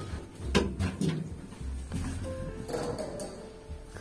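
A sharp clack as the lift's hand-pushed swing door is opened, with music playing.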